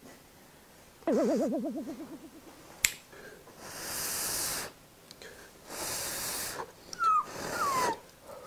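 A person slurping instant noodles, two long noisy slurps about four and six seconds in. About a second in, a wobbling cartoon-style sound effect plays for about a second; near the end come two short, falling squeaky tones.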